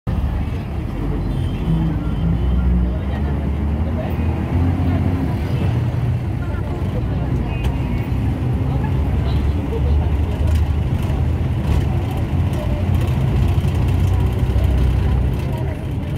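Steady low rumble of a moving road vehicle heard from inside, engine and tyre noise running without a break.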